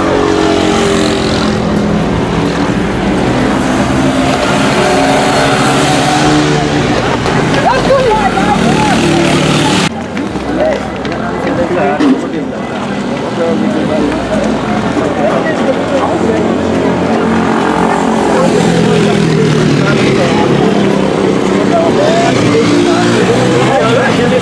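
Voices in a street over a running motor vehicle engine. The sound changes abruptly about ten seconds in.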